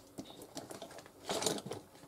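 Small objects handled on a tabletop: light scattered clicks and taps, with a short burst of clatter about one and a half seconds in.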